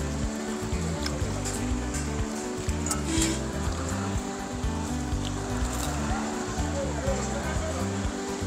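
Background music with a bass line and chords changing in steps, with a few faint clicks over it.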